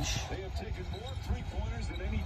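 Basketball game commentary from a television, a commentator's voice heard faint and distant through the TV's speakers, over a low rumble.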